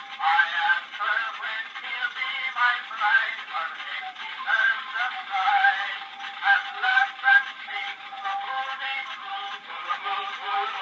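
A 1901 Edison Gold Molded wax cylinder playing on an Edison phonograph through its horn: a sung melody, the sound thin and boxed into a narrow middle range with nothing deep and little bright.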